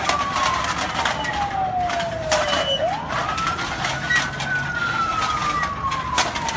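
An emergency-vehicle siren wailing: one tone slides slowly down in pitch, sweeps quickly back up about three seconds in, and starts falling again. Scattered short clicks and background noise sit under it.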